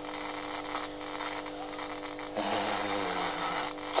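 A steady electrical hum made of several held tones, carried in a radio broadcast's sound during a pause in the talk; a faint murmuring voice joins it about two and a half seconds in.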